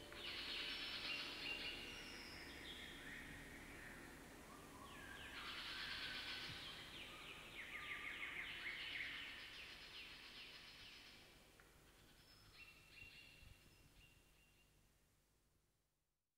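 Faint high twittering, like a chorus of birds, in slow swells at the close of a recorded track, dying away to silence near the end.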